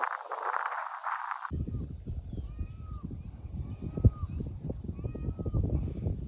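Wind rushing on the microphone. About a second and a half in, the sound changes abruptly to low wind buffeting, with short arching calls from an animal repeating about once a second over it.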